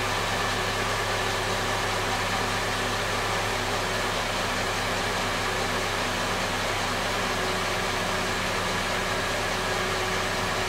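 Car engine idling steadily, heard from inside the car as an even low hum under a hiss, with no change in speed.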